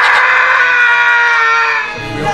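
A group of men yelling together in one long, loud held shout that fades near the end.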